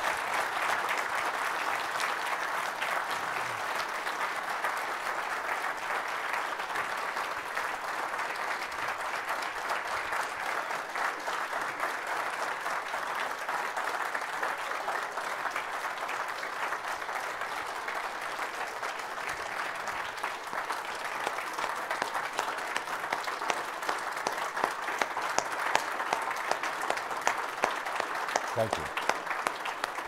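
Audience applauding at length after a talk, a dense steady clapping that in the last several seconds thins into more distinct, louder single claps.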